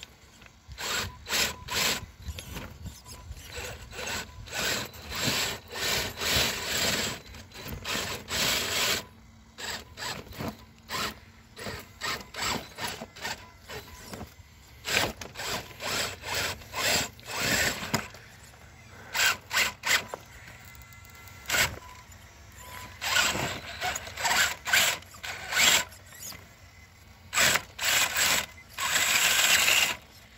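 Irregular bursts of rough scraping and crunching, each up to about a second long, with a few short quieter gaps.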